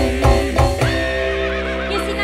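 Live band music: a few drum strokes over keyboard notes in the first second, then a held chord with a wavering high note.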